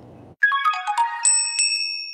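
Short electronic chime jingle, the video app's outro sound: a quick run of bright bell-like notes with small clicks, starting about half a second in and settling into held high ringing tones.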